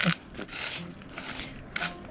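Wet river gravel being stirred by hand on a quarter-inch screen: pebbles scraping and rubbing against each other and the mesh, with a couple of soft scrapes about half a second in and near the end.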